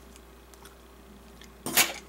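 Scissors cutting through a soft plastic tube lure: a few faint small clicks, then a short louder rustle near the end.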